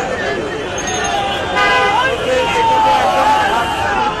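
Street crowd chatter over road traffic, with a vehicle horn tooting briefly about one and a half seconds in.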